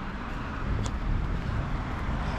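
Steady low rumble of road traffic, swelling slightly about half a second in.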